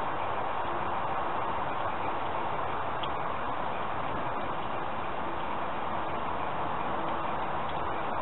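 A steady, even hiss with a few faint ticks of small twigs crackling as they burn over a tea light.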